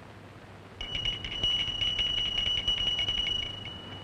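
Call bell ringing continuously with a rapid rattle for about three seconds, starting about a second in and cutting off at the end: a summons rung from a sickroom.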